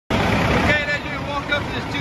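A person starts talking just under a second in, over a steady low rumble. The first half-second holds a short burst of noise.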